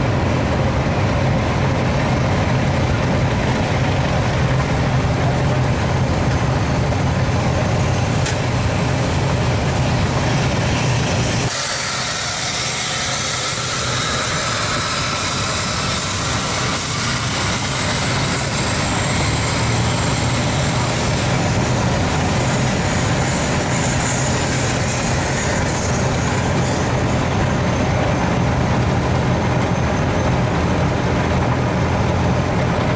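Engine running steadily with a low hum. About eleven seconds in, the low end drops and a loud hiss comes in and carries on.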